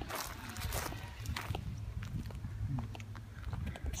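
Footsteps on dry soil and pine-needle litter, with a few short crackles among them, over a low steady rumble on the microphone.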